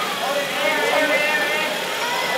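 Indistinct voices over the steady running noise of a passenger train moving slowly along a station platform.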